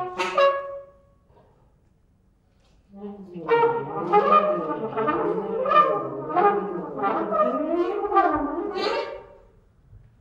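Trumpet and saxophone playing live together. A short loud blast cuts off under a second in, and after about two seconds of quiet comes a longer passage of both instruments, their lines sliding up and down with regular accents, which fades out near the end.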